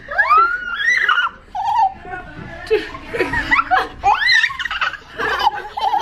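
Young children laughing and shrieking in quick, high, arching cries, with a man laughing along, as they ride down an enclosed plastic tube slide.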